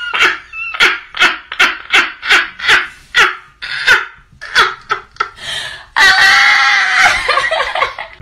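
A woman laughing loudly in rapid, even bursts, about two or three a second. For the last two seconds it turns into a long, high-pitched squeal of laughter.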